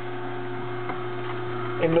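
Omega masticating juicer's motor running with a steady hum.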